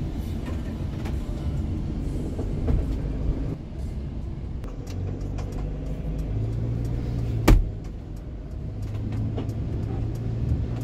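Inside a moving vehicle in the rain: steady engine and tyre noise with a low hum, and light scattered ticks of rain on the glass. A single sharp thump about seven and a half seconds in is the loudest sound.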